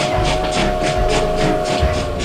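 Steam locomotive sound effect over music: rhythmic chuffing at about four to five beats a second, with a long, steady whistle that stops just before the end.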